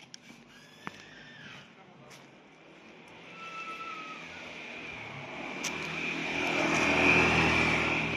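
Honda PCX scooter's single-cylinder engine approaching along the road, growing steadily louder over the second half with a steady high whine on top.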